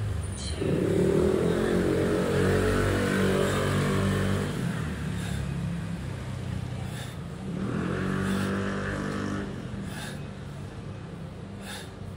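Road vehicle engines revving outside, in two bursts: a longer one starting about half a second in and lasting about four seconds, and a shorter one around eight seconds in, over a steady low traffic rumble.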